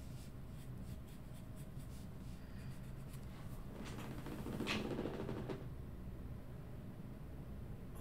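Pencil scratching on drawing paper in faint, quick shading strokes, mostly in the first half. A single spoken word comes about halfway through.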